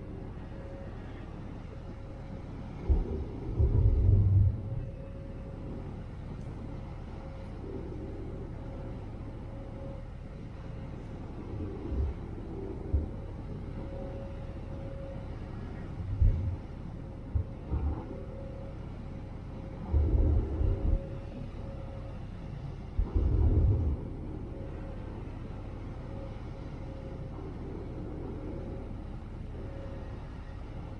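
Manly ferry's engines running steadily under way, with a constant hum and a low rumbling noise bed. Irregular low buffeting gusts of wind on the microphone come in several times, loudest about 3 to 5 seconds in and again around 20 and 23 seconds.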